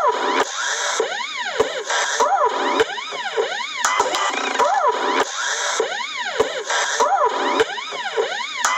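Electronic background music led by a siren-like synth that glides up and down over and over, a couple of sweeps a second, with short percussive clicks.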